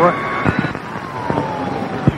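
Military radio channel hissing between transmissions, with a few clicks. Steady whistle tones stop about half a second in, then a single heterodyne whistle slowly falls in pitch.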